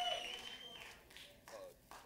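A man's voice trailing off in the first part, then a quiet club room with two short soft clicks.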